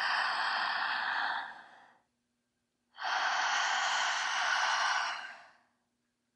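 A woman's strong breaths through the mouth, paced for breathwork: an inhale trailing off about two seconds in, then after a short pause a long, even exhale of about two and a half seconds.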